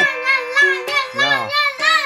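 A girl chanting "ramyeon" in a sing-song voice, with background music.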